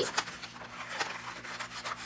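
Scissors cutting into brown pattern paper: the paper rubs and rustles against the blades, with a few short snips.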